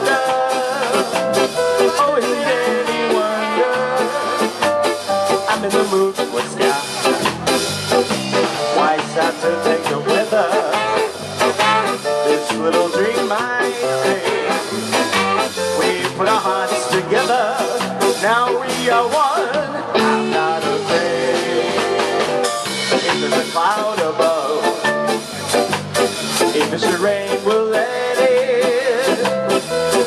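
Live ska band playing an instrumental stretch of a song, with saxophones and a trumpet over drums, guitar and keyboard.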